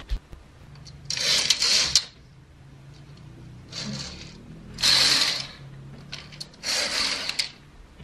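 Laundry hangers and curtain hooks sliding along metal rails: four short scraping rattles, each under a second long, with light clicks of hangers between them.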